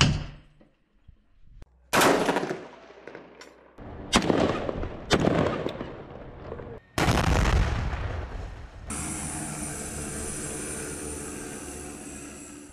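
About five loud gunshots fired singly, one to two seconds apart, each trailing off in a long echo. From about nine seconds in, a small quadcopter drone hovering, a steady hum of several tones.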